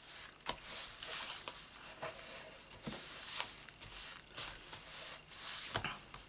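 Card stock rustling and sliding under hands as a layered card panel is positioned and pressed flat onto a card base, in uneven bursts with a few light knocks.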